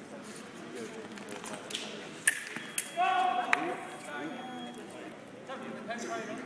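Two sharp metallic clicks a half second apart, then the electric foil scoring box sounds a steady tone for about half a second, signalling that a touch has registered; here one light shows an off-target hit. Another sharp click comes as the tone ends.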